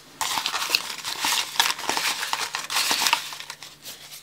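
Small folded kraft-paper envelopes rustling and crinkling as they are handled, a dense run of papery crackles that stops shortly before the end.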